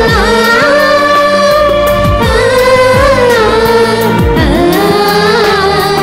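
Music with singing: voices hold long, slightly wavering notes over deep drum strokes that slide down in pitch.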